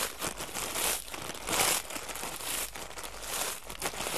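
Potato chip bag crinkling and rustling in irregular bursts as it is handled, just before the chips inside are crushed into crumbs.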